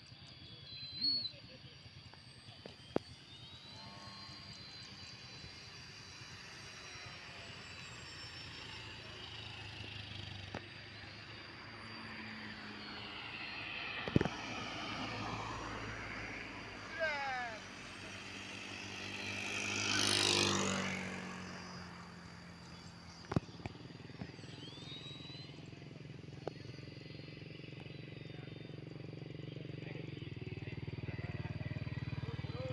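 Brushless electric motors and propellers of radio-controlled Pitts biplanes whining as they fly aerobatics, their pitch swinging up and down with throttle and passes. One plane passes close about twenty seconds in, its propeller noise swelling and fading.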